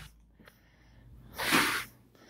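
Near silence, then one short, sharp, noisy breath about one and a half seconds in.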